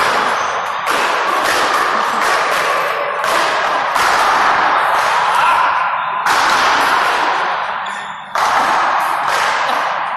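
Paddleball rally: a rubber ball smacked by solid paddles and rebounding off the court wall, a sharp hit every second or two, each ringing on in a long echo in the large hall.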